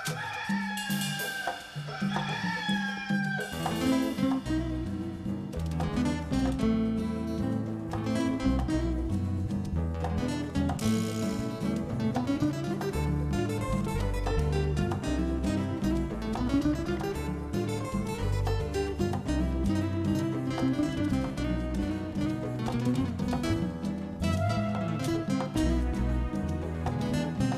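Two rooster crows in the first few seconds, then a solo classical guitar playing a fingerpicked piece with a steady bass line.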